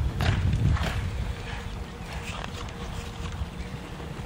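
Hoofbeats on soft arena dirt from a cutting horse working a cow. Loudest in the first second, then quieter.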